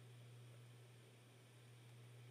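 Near silence: room tone with only a faint steady low hum.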